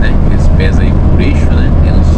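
Steady low drone of a Mercedes-Benz Atego truck's diesel engine and road noise inside the cab while cruising on the highway, with a man's voice speaking briefly over it.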